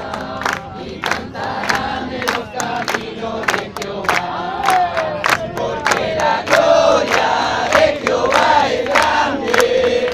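A crowd of worshippers singing a song together, clapping their hands in a steady beat of about two to three claps a second.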